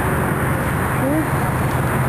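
Steady low rumble of wind buffeting the microphone outdoors, with one faint short call about a second in.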